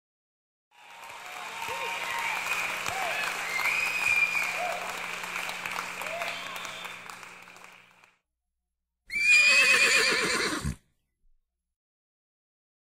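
Crowd cheering and applause with scattered whoops, fading in about a second in and fading out again after about seven seconds. About nine seconds in comes a single loud, wavering high cry lasting nearly two seconds, which drops in pitch as it ends.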